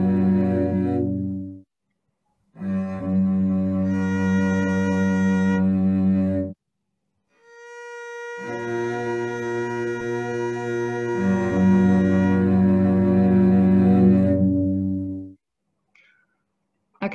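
Sustained string tones from a computer animation of a monochord divided at four-fifths. The whole string's tone ends about a second and a half in. After a short gap the four-fifths length sounds, a major third higher, for about four seconds. After another gap a high tone for the one-fifth length enters, and a second later the lower tones join it, all three sounding together until shortly before the end; the highest tone is a little out of tune.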